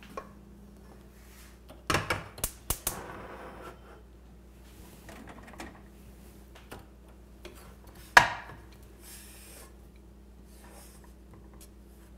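A stainless steel saucepan and wooden spoon knocking and clattering on the stovetop: a quick cluster of knocks about two seconds in, a few light taps, and one sharp, loud clank about eight seconds in, over a low steady hum.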